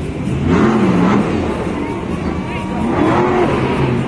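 Stone Crusher monster truck's supercharged V8 engine revving up and down as the truck drives across the dirt arena, with the pitch rising and falling twice.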